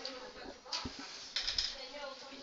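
Marker pen scratching on a whiteboard in a few short strokes, with a couple of faint low knocks about a second in.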